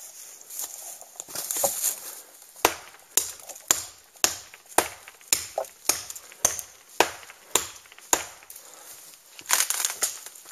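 Cold Steel Trailmaster survival knife chopping into the trunk of a dead quaking aspen: about a dozen sharp strikes, just under two a second. Near the end comes a longer crackling as the cut trunk begins to give way and fall.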